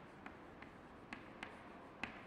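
Chalk writing on a chalkboard: several short, sharp taps and strokes of the chalk against the board over faint room hiss.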